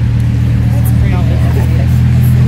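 Rolls-Royce Wraith's twin-turbo V12 idling steadily, a low even hum.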